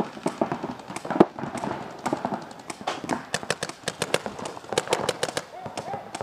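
Paintball markers firing: many sharp, quick shots, some in fast strings of several shots a second, densest in the second half. Distant shouting between players comes in under the shots.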